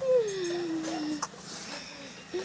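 A dog whining: one long whine that starts high and slides down in pitch, lasting just over a second.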